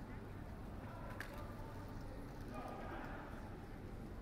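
Pedestrian-street ambience: footsteps on stone paving over a steady low city rumble, with faint voices of passers-by toward the end and a single sharp click about a second in.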